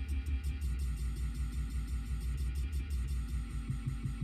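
A Pioneer CDJ-2000NXS2 stuttering a tiny snippet of a paused track over and over as its jog wheel is nudged back and forth to find the start of a beat: mostly deep bass, repeating in quick pulses with fast ticks above.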